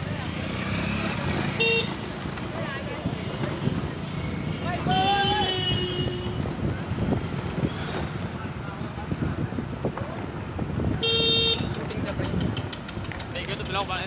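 Street traffic heard from a moving scooter: steady road and wind noise, with two short vehicle horn beeps, one about two seconds in and one about eleven seconds in. A longer wavering call sounds around five to six seconds.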